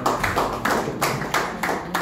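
A small audience clapping: sharp, separate claps at about four to five a second.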